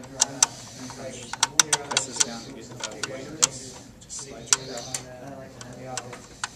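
Sharp, irregular clicks of a screwdriver working the screws of a laser printer's fuser cover panel, metal tip ticking on screw heads and plastic, with soft voices underneath.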